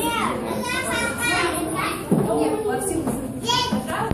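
Several children's excited high-pitched voices, calling out and squealing without clear words, in a room with a little echo.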